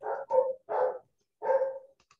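A dog barking four times in quick succession, the barks spread over about a second and a half.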